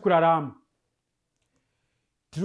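A man speaking in Shona for about half a second, then his voice stops and there is complete silence.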